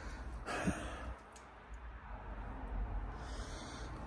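A man's soft exhale close to the microphone about half a second in, then faint room noise.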